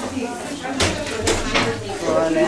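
Background chatter of children and adults in a room, with three short sharp clicks in the second half.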